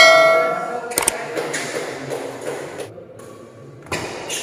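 A bell-like chime rings out and fades over the first half second, then sharp clicks come about a second in and again near the end, over a low background of the hall.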